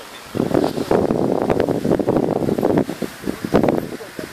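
Wind buffeting the microphone: a loud, rough, uneven rumble that starts suddenly just after the beginning and dies away near the end.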